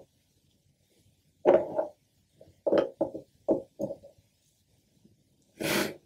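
A man's short wordless vocal sounds, several in a row, then a sharp breath in near the end.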